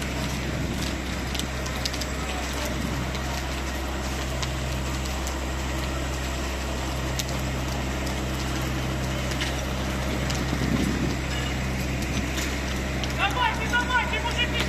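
Steady low drone of heavy engines running, the fire engines at a building fire, with scattered faint crackles over it.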